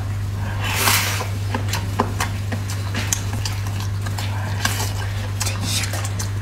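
Close-up eating sounds: a loud wet bite and slurp about a second in, then chewing and wet mouth clicks and smacks on braised pork skin, with the sticky meat pulled apart by hand. A steady low hum runs underneath.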